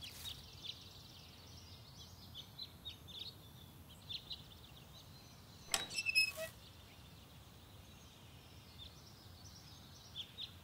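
Faint garden ambience with scattered bird chirps. About six seconds in, the metal garden gate gives a few clicks and a short squeak as it is opened.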